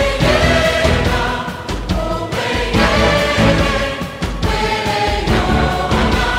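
A choir singing a praise song over instrumental accompaniment with a low, pulsing beat, in sustained sung phrases.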